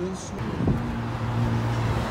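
Street traffic: a steady rush of passing cars, with a vehicle's steady low engine hum setting in just under a second in.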